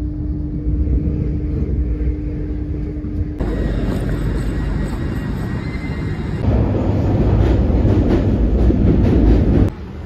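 Inside a moving passenger train: a steady rumble with a held hum. After cuts it gives way to louder, noisier station-platform ambience, which drops away abruptly near the end.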